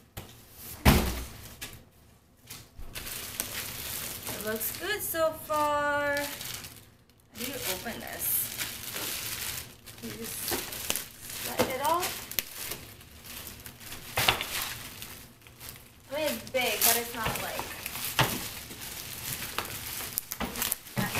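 Plastic wrapping on a new suitcase crinkling and rustling as it is handled, with a single loud thud about a second in as the emptied cardboard box comes down.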